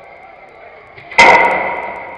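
A football striking the hard surround of an indoor five-a-side pitch: one loud bang about a second in, ringing and dying away over most of a second.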